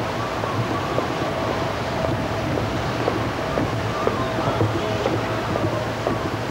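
Steady city street noise of traffic, heard through a handheld 1980s camcorder's microphone while walking, with a few light knocks from the camera being handled.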